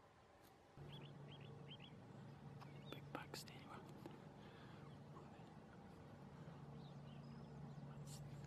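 Faint whispering over a quiet outdoor background with a steady low hum. There are three short bird chirps soon after the start and a few sharp clicks around three seconds in.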